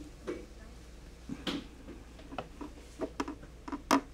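Irregular small clicks and taps of fingers and wire leads on a plastic solderless breadboard as a component is worked into its holes, about ten in all, the loudest near the end.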